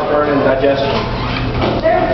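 Several people's voices talking over one another, words not picked out.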